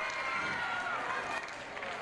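Faint, indistinct voices in the background.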